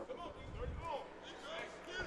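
Boxing-match ambience: voices shouting from ringside, with a few dull thuds from the ring.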